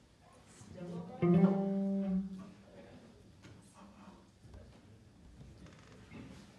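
Electric guitar sounding a single note plucked about a second in, ringing steadily for about a second before it is stopped, a check of the sound before the song starts.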